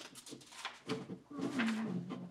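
A person's low, drawn-out hum or murmur that slides slightly down in pitch and holds, over paper being rustled and handled.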